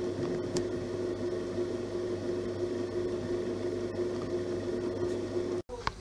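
Bread machine's kneading motor running as it mixes a cake batter in its pan: a steady, even hum with one constant pitch.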